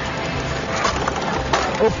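Clattering rattle of a hand-propelled four-wheeled rowing cart rolling over asphalt as its levers and sliding seat are worked, with a short exclamation near the end.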